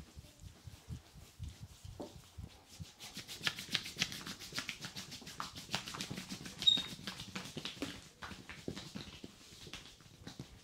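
Hands massaging lotion into a bare chest: soft low pats at first, then from about three seconds in a quick run of wet rubbing strokes, with one brief high squeak of skin near the middle.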